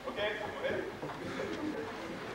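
Indistinct speaking voice, its words not clear enough to make out.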